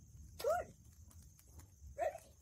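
A dog giving short, high whining yips: one about half a second in and a second at the very end, each rising and falling in pitch.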